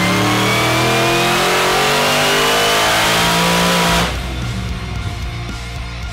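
Supercharged V8 of an HSV GTS on a hub dynamometer, doing a full-load pull with its pitch climbing steadily through the revs. About four seconds in the throttle shuts and the engine note drops away sharply.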